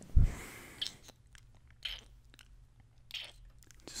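Close-up kissing sounds into the microphone: about four short, wet lip smacks roughly a second apart, after a heavy low thump at the very start.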